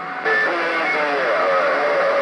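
CB radio receiving a distant skip station: about a quarter second in, a new transmission opens with a step up in static hiss. Under it comes a weak, warbling voice that wavers in and out, phased out by propagation fading.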